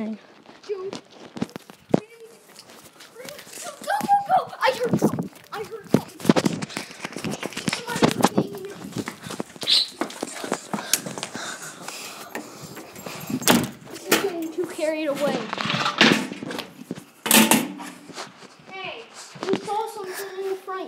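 Muffled children's voices talking on and off, with several sharp knocks and rustling, the loudest knocks past the middle and near the end.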